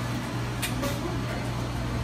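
Steady low hum of Slurpee frozen-drink machines running, with two brief sharp clicks a little over half a second in.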